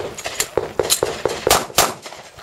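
A handgun fired in a fast string, about eight shots in two seconds, with the last two the loudest.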